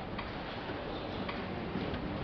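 Marker tip tapping and scratching on a whiteboard in a few irregular light clicks, over a steady room hiss.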